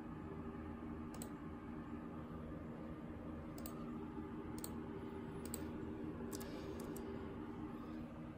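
Scattered single clicks, about seven spread over several seconds with two in quick succession near the end, as a laptop is worked through web pages. Under them runs a steady low hum.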